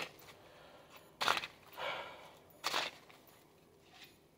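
Three short, soft swishes of tarot cards being handled and drawn from the deck, spread through a few seconds.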